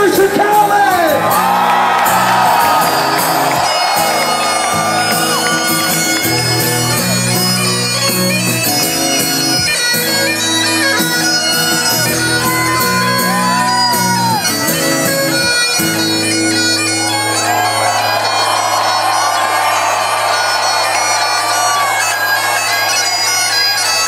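Great Highland bagpipes playing a solo: steady drones under the chanter's melody, with quick grace-note flourishes between the notes.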